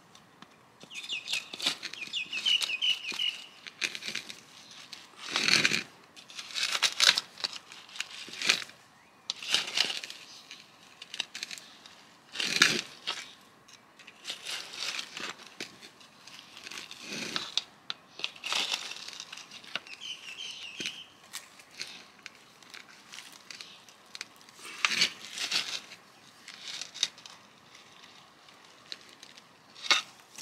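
A small hand trowel scraping and crunching down through dry potting soil against the inside wall of a terracotta pot, loosening the plant's root ball. It comes in irregular strokes, some sharp and loud, with short pauses between.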